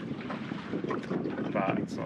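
Wind buffeting the microphone and water slapping against the hull of a drifting boat, a steady rough rush, with a brief voice sound near the end.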